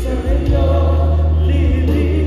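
A live worship band playing a praise song: singers carrying the melody over electric guitar, drums and sustained deep bass notes.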